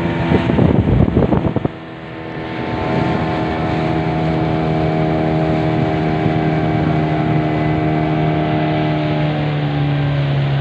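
A small river boat's motor runs steadily. Loud wind noise buffets the microphone in the first second or two. The motor then drops back, picks up a little in pitch and settles into an even run.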